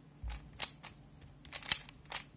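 Plastic bandaged puzzle cube being turned by hand: a run of sharp clicks as its layers snap round, the loudest near the end. A low dull knock comes about a quarter second in.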